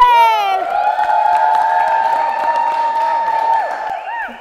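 Excited cheering: a high shout held for about three and a half seconds over a haze of crowd noise, falling away near the end.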